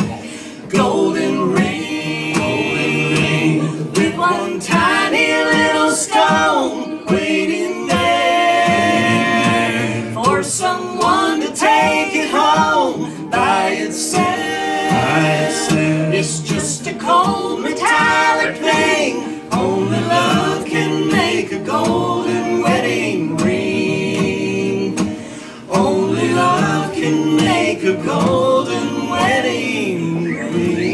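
Live country music: men and women singing together in harmony over strummed acoustic guitars, with a short break in the singing near the end.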